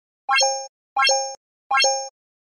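Three identical short electronic pop sound effects, about three-quarters of a second apart, each a quick rising blip followed by a brief steady chime. They mark animated Like, Subscribe and notification-bell buttons popping up one by one.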